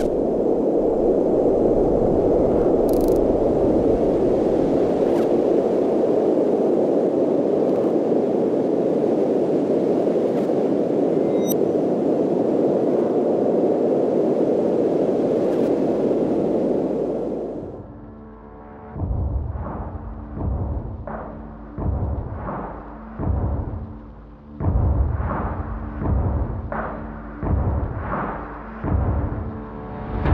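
Edited soundtrack: a steady, dense rumbling noise for about the first seventeen seconds, then music with low drum hits about once a second over held low notes.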